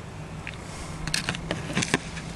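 Handling noise from a handheld camera being fumbled with while its light is switched on: several sharp clicks in the second second, over a faint steady low hum.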